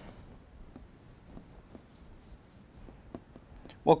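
Dry-erase marker drawing and writing on a whiteboard: faint, intermittent scratchy strokes and light taps of the tip.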